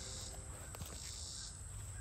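Insects chirping steadily in the background, with a couple of faint ticks from fingers handling the hat's sweatband.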